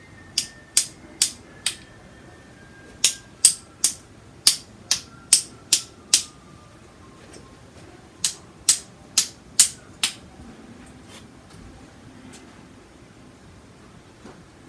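Sharp wooden taps of a paintbrush struck against another brush handle, in four runs of three to five taps about two to three a second with short pauses between, knocking thinned acrylic off a fan brush to spatter small dots onto the canvas.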